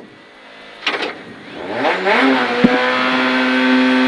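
Peugeot 208 VTi R2B rally car's four-cylinder engine, heard from inside the cabin, revved up about two seconds in and then held at steady high revs, ready for the launch off the start line. A sharp click partway through the held revs as first gear is selected.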